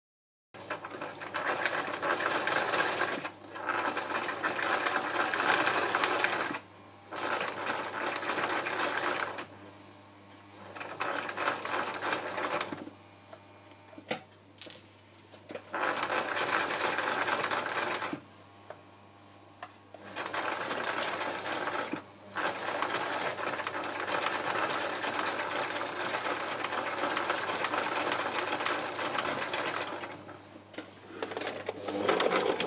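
Sewing machine stitching in runs of a few seconds with short pauses between, zigzagging lengths of cord down onto a piece of textile art.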